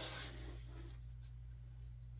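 Faint scratching and rubbing of fingers handling a 3D dinosaur puzzle sheet and one of its pieces, over a steady low hum.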